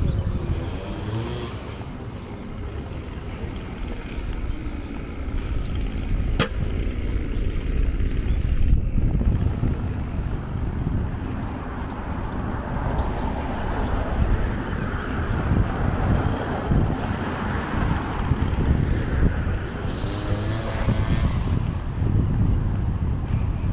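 Outdoor roadside ambience: cars passing on the street, with wind buffeting the microphone as a low rumble. A single sharp click comes about six seconds in.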